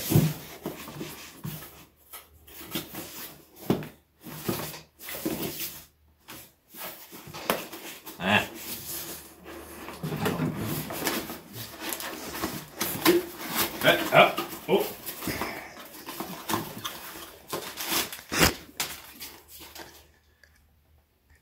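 Cardboard product box being handled and pried open: repeated rustling, scraping and knocking of the cardboard flaps as they are pulled at.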